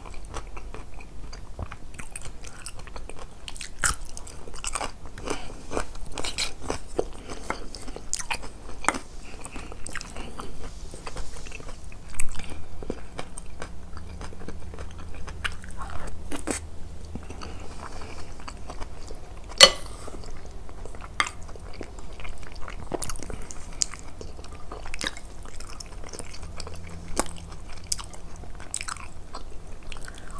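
Close-miked chewing and biting of a home-cooked meal of rice and stewed eggplant, potato and beef, with crisp irregular crunches from pickles between wetter mouth sounds. Two sharper, louder clicks come about 12 and 20 seconds in.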